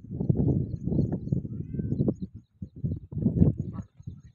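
Wind buffeting the microphone in low, irregular rumbling gusts, with a short lull about halfway through.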